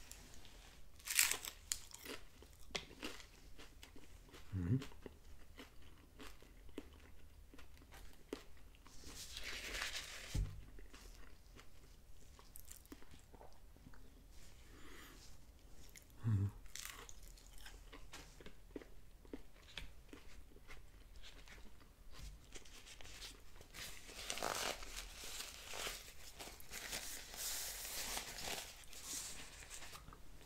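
Biting into and chewing a Taco Bell crunchy taco close to the microphone: the hard corn taco shell crunches and cracks in sharp bites, with a loud crunch about a second in and a dense run of crunching near the end.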